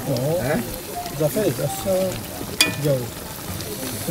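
Tomato-sauce rougail of sausage slices sizzling in a large aluminium pot as a metal spoon stirs it gently, with one sharp metallic clink about two and a half seconds in. Low voices murmur under it.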